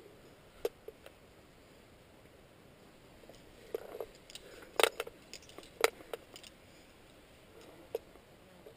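Climbing rope being taken in at a belay, with a few short clicks and scrapes of rope and gear handling over a quiet background; the sharpest clicks come about five and six seconds in.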